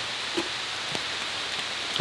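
Steady rain falling, an even hiss with a few faint ticks of single drops.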